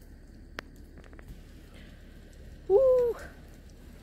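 A single short, high-pitched voice-like exclamation, an 'ooh' that rises, holds and drops over about half a second, near the end. Before it there is only quiet background with a sharp click about half a second in.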